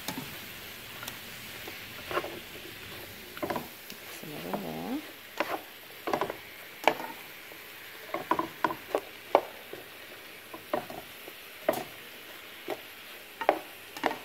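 Chicken fajita filling sizzling in a frying pan while it is stirred, with irregular clicks and scrapes of the utensil against the pan. A brief wavering hum-like sound about four and a half seconds in.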